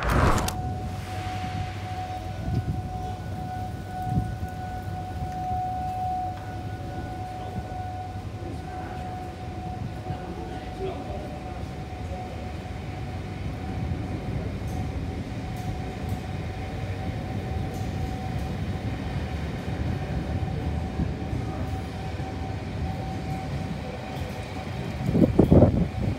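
Diesel locomotive-hauled passenger train (British Rail Class 67) at a station platform: a steady low engine rumble with a constant high whine over it. The locomotive passes close and loud about 25 seconds in.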